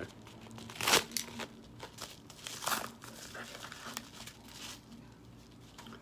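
Yellow padded paper mailer crinkling and tearing as it is cut open with a knife, in a row of short rustling bursts, the loudest about a second in.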